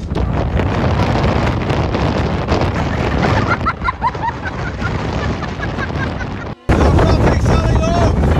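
Strong wind buffeting the phone's microphone, a loud steady rumble that cuts out for a moment about six and a half seconds in.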